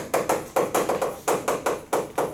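Chalk on a chalkboard as a word is written: a quick run of short, sharp taps and scratches, about six a second.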